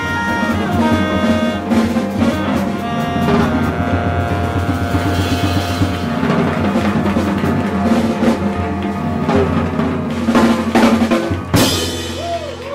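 Live jazz quartet of tenor saxophone, piano, double bass and drum kit playing, the saxophone holding long notes over busy drumming, with a loud accent near the end.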